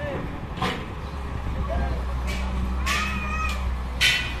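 Excavator engine running with a steady low rumble, under street voices and a short high call that rises and falls near the end.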